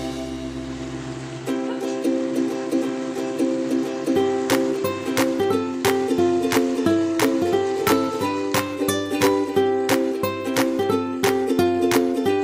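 Background music: a plucked ukulele tune. The tune changes about a second and a half in, and a light, regular beat comes in a few seconds later.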